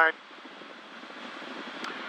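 Steady hiss of a Cirrus SR20's cabin noise in cruise: engine, propeller and airflow, heard faintly through the pilot's headset audio.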